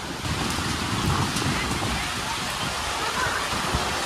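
Heavy rain falling steadily: a constant hiss with a low, uneven rumble underneath.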